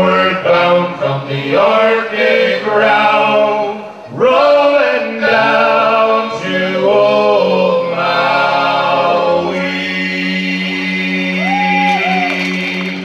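Four male voices singing a sea shanty unaccompanied, in close harmony. Near the end they settle onto one long held chord that closes the song.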